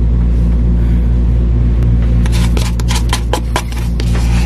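A metal spoon scraping ice cream out of a carton and knocking against a ceramic mug, a quick run of scrapes and clicks in the second half. Under it runs a steady low hum.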